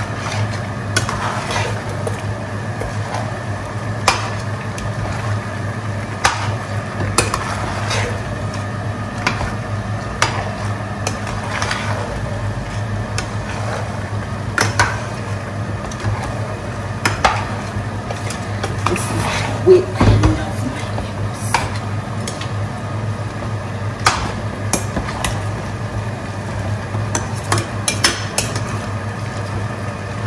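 Metal spoon stirring thick egusi soup in a stainless steel pot, scraping and knocking against the pot at irregular intervals over a steady low hum; the loudest knock comes about two-thirds of the way in.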